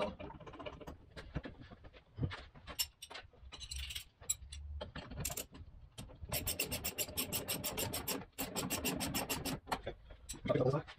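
Fuel tank being shifted and rubbed against the car body as it is centred on its brackets, with scraping and scattered knocks, then a rapid, even run of clicks lasting about three seconds near the end.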